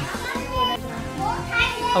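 Mixed talk from adults and children under steady background music.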